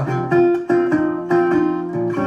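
National resonator guitar played fingerstyle in a blues style: a short instrumental fill of plucked, ringing notes between sung lines.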